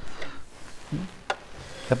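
Hands handling an Elna eXplore 220 sewing machine: soft rubbing and a few light clicks as its parts are felt over.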